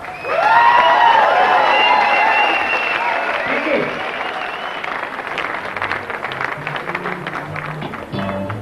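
Concert audience cheering and whooping as the song ends, with many voices shouting over dense clapping. The shouts thin out in the second half, leaving applause that slowly fades.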